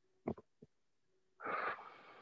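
A person taking a deep, audible breath as a breathing exercise begins. It starts about one and a half seconds in, loudest at first, then fades away, with a couple of short voice sounds just before it.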